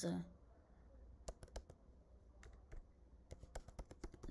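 Computer keyboard typing: a few faint, separate key clicks, coming closer together near the end as a word is typed.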